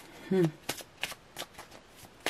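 Tarot cards being handled: a handful of light, irregular clicks and snaps of card stock.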